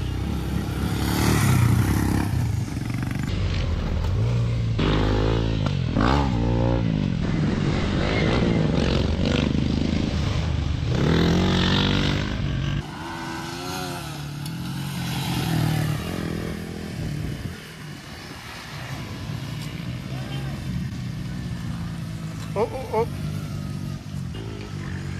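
Dirt bike engines revving up and down as riders go round a dirt track. The engine sound is loudest in the first half and drops suddenly to a quieter level about halfway through.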